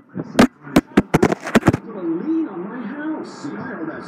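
A quickening series of sharp knocks and clicks as the phone recording it is knocked about while being sent down over a banister on a pulley. For the last two seconds a person's voice carries on in the background.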